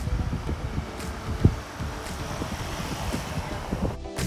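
A van driving past on the road, its tyres and engine making a steady rushing noise, with wind buffeting the microphone and one low thump about a second and a half in.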